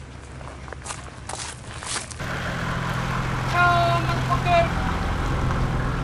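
Car engine idling, a steady low hum that gets louder about two seconds in. Around the middle, a few short high-pitched calls sound over it.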